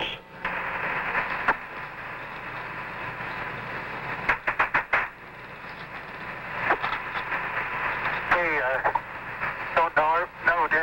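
Radio static hiss on the Apollo 11 air-to-ground communications link, narrow and telephone-like. A cluster of sharp clicks comes about four to five seconds in, and a brief garbled voice near the end.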